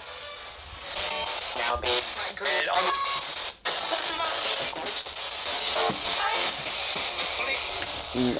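Spirit box sweeping the radio band: a steady hiss of static broken up by brief, chopped snatches of broadcast voices and music, with a sudden dropout about three and a half seconds in.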